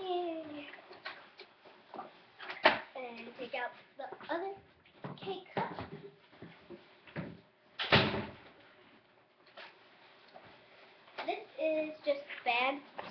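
A child's voice talking, broken by two sharp knocks: one about two and a half seconds in and a louder one about eight seconds in.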